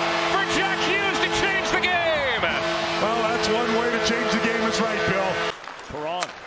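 Arena goal horn blaring over a cheering home crowd right after a goal. The horn's held chord sags in pitch and breaks about two seconds in, sounds again, and cuts off about five and a half seconds in, while shouts and whoops carry on throughout.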